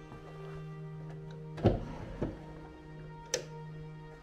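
Background music with steady held notes. About a second and a half in, a wooden nightstand drawer is pulled open with two knocks, followed by a sharp click a second later.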